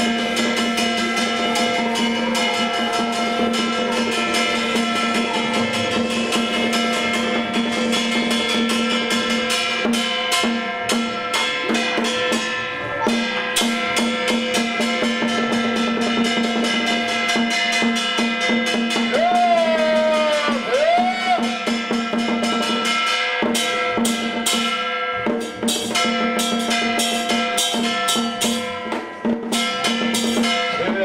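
Taoist ritual ensemble music: a drum beaten in rapid strokes under steady held notes, which bend in pitch about twenty seconds in.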